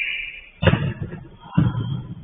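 Two loud, heavy thumps about a second apart, each dying away briefly, after a short high sound at the very start.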